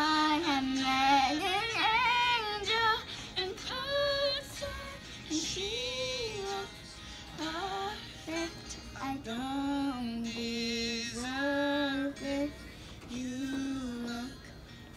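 A high female voice singing a slow melody in phrases, holding notes with vibrato and pausing briefly between lines.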